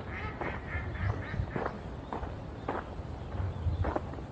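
Ducks quacking, a quick run of short calls in the first second or so, then footsteps on a dirt path.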